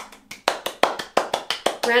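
One person clapping her hands, a quick steady run of claps at about six a second.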